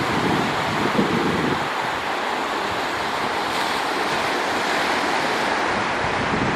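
Small surf breaking and washing up a flat sandy beach, a steady rush of foaming water. Wind buffets the microphone with a low rumble for the first second and a half or so.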